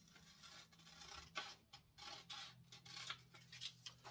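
Scissors snipping through thin printer paper, a quick series of faint short cuts from about a second in.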